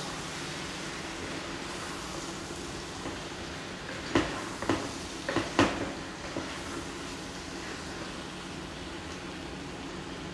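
Potato chunks and flat beans sautéing in spiced oil in a nonstick pot, a steady sizzle, with a few sharp knocks of the spatula against the pot between about four and six seconds in.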